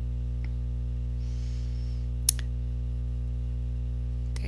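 Steady low electrical hum, with one sharp click about two seconds in and a fainter click earlier.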